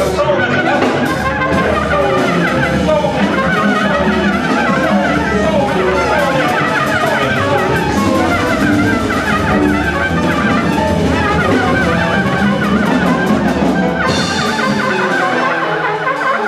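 Live jazz quintet playing: upright bass, saxophone, trumpet, piano and drums, with quick runs of horn notes over a plucked bass line. Near the end the low bass drops out.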